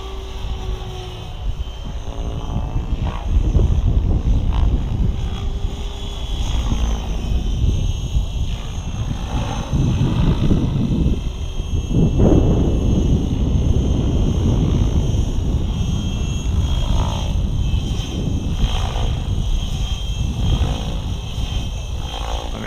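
Electric Align T-Rex 760X RC helicopter in flight: its rotor and motor sound rising and falling as it manoeuvres, swelling loudest about four seconds in and again around halfway through. A strong uneven low rumble runs under it.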